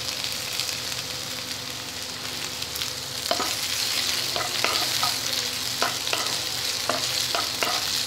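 Onions, green chillies and freshly added chopped tomato sizzling in hot oil in a frying pan, with a spatula stirring them. From about three seconds in, the spatula scrapes and taps against the pan several times.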